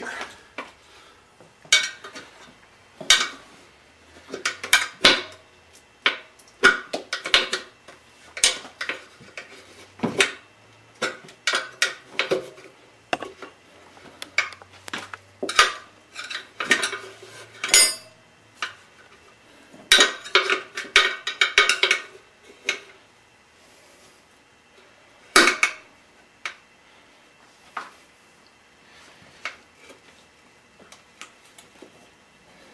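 Steel tire irons clinking and knocking against a spoked motorcycle wheel's metal rim as the second tire bead is levered off, in irregular sharp metallic clanks. They come thickest in flurries past the middle, then thin out, with one loud knock late on.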